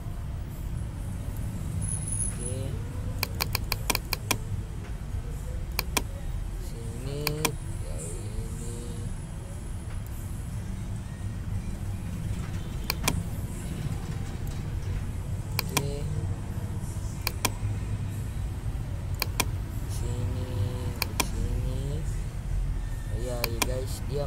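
Computer mouse clicking as curve nodes are placed and dragged in a drawing program: sharp single clicks every few seconds, with a quick run of about six clicks a few seconds in. A steady low rumble runs underneath.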